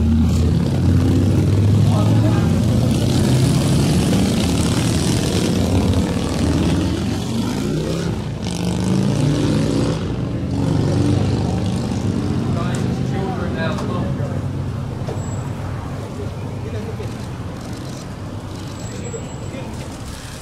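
Several people talking indistinctly at once over a steady low hum, the whole gradually growing quieter toward the end.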